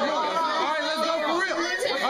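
Several men talking over one another at once: overlapping group chatter, with no one voice standing out.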